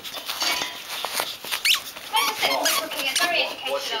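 A Yorkshire Terrier playing with a toy: a run of sharp clicks and knocks, with one short rising squeak about a second and a half in.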